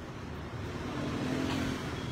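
Low, steady background hiss with a faint hum, slowly growing a little louder.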